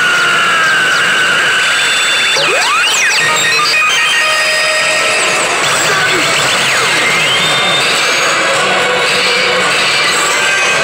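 Warau Salesman 3 pachislot machine playing its bonus-zone electronic music, thickly layered with chiming effects. Quick up-and-down pitch sweeps come a little over two seconds in, and a rising sweep comes around seven seconds in.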